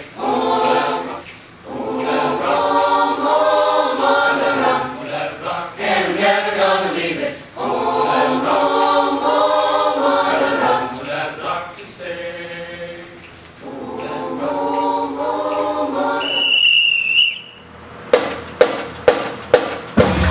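Mixed choir singing in long phrases with short breaths between them. Near the end the singing stops, a short high steady tone sounds, and then sharp percussion strikes begin at about three a second.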